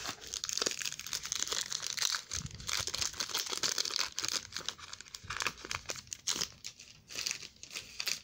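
Foil wrapper of a trading-card pack crinkling as it is handled and torn open, a dense run of irregular crackles.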